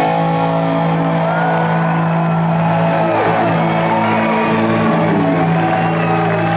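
Amplified electric guitars holding a sustained final chord as a live rock song ends, with the crowd cheering and whooping over it.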